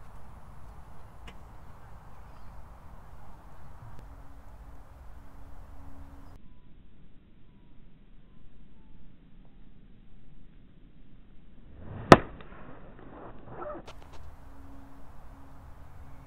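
Golf iron striking the ball: one sharp click of the clubface hitting the ball about twelve seconds in, over low outdoor background noise.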